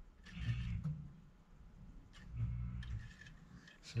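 Air-conditioning outdoor unit running, heard faintly from under the house after 24 volts is jumped from R to Y at the furnace board. It comes on, so the unit answers a cooling call and the missing 24 volts lies back at the thermostat. Two short low rumbles swell up, about half a second in and again past two seconds.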